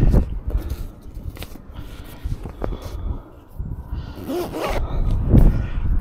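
Quilted fabric of a dog back-seat cover being handled and rustled, with a few light clicks of straps or buckles over a low rumble of handling noise. A short low voiced murmur comes near the end.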